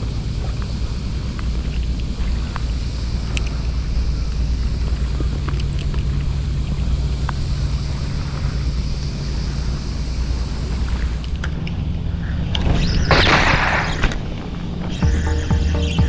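Sea wind buffeting the microphone, a steady low rumble with faint ticks. About thirteen seconds in there is a brief rush of louder noise, and background music comes in near the end.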